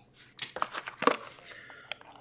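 Scattered light clicks and crinkles from a shrink-wrapped trading-card box being picked up and handled, with a box cutter brought to its plastic wrap near the end.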